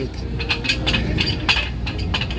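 Free-standing metal ladder clinking and knocking in irregular clicks as a performer balances on top of it, over a low steady rumble.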